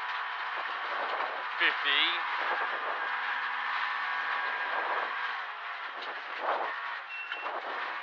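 Rally car engine running at speed on a gravel stage, heard from inside the cabin, with road and gravel noise throughout. A co-driver's short pace-note call comes in about a second and a half in.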